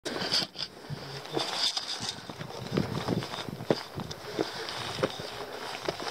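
Irregular scuffs, taps and scrapes of boots and hands on rock as a climber scrambles up a rocky ridge, close to the microphone.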